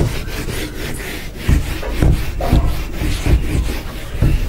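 A whiteboard being wiped clean with a duster in rapid back-and-forth rubbing strokes, with a few dull low thumps from about one and a half seconds in.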